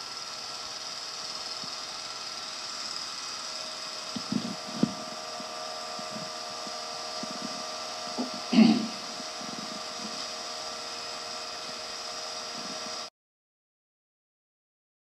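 Steady hum and hiss from an old home tape recording, with a motor-like whine held on a few fixed pitches. There are a few soft knocks in the middle, a brief louder sound about eight and a half seconds in, and then the sound cuts off abruptly to silence about a second before the end.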